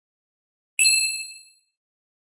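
A single high, bright bell-like ding, struck once a little under a second in and dying away within about half a second: an edited-in chime sound effect.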